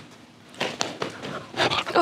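A dog clambering onto a seated person's lap: irregular scuffling and short animal noises that start about half a second in.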